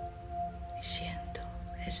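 Soft ambient meditation music of sustained, overlapping drone tones, with a short breathy sound about a second in, just before the guide's voice resumes near the end.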